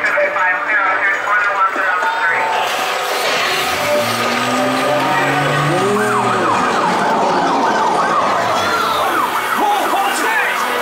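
Police-car sirens wailing as a sound effect in the police-chase scene of the E.T. Adventure dark ride, the pitch rising and falling in repeated sweeps.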